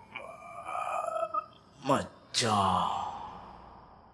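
A man gasping and groaning in pain: two short, sharp cries about two seconds in, each falling in pitch, the second and louder one trailing off slowly.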